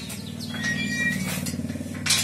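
Wrought-iron gate being pushed open, its metal hinges creaking with a low juddering creak and a short high squeak about a second in.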